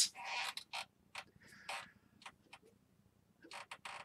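Faint, scattered small clicks and creaks with a short rustle at the start and a brief hiss near the middle, thickening into a quick cluster of clicks near the end.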